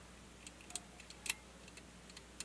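Faint, scattered ticks and clicks of a steel lock pick probing the pins of a cross lock under light tension, with one sharper click a little past the middle.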